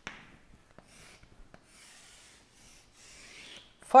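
Chalk scraping across a chalkboard in several separate strokes as straight lines are drawn, with a short tick at the start.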